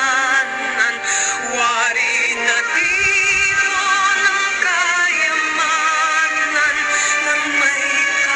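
A song: a sung vocal melody with a wavering vibrato over backing music.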